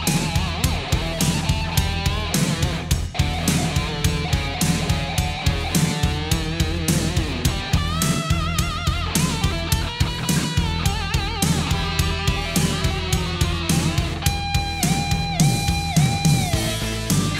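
Hard rock instrumental break: an electric guitar solo with string bends and vibrato over a steady drum beat and bass, ending in long held notes.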